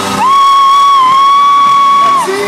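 One long, steady, piercing high note held for about two seconds, with a slight dip in pitch midway. It is close to the microphone and much louder than the concert music, which it all but drowns out.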